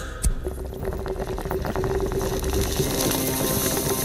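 A sharp click about a quarter second in, then about two seconds of rapid, uneven crackling over a steady low tone.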